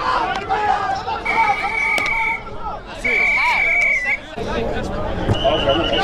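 A referee's whistle, blown in two long, steady blasts of about a second each, with a fainter third blast near the end, over sideline chatter.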